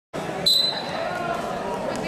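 Referee's whistle: one short, shrill blast about half a second in, over crowd voices in a gym.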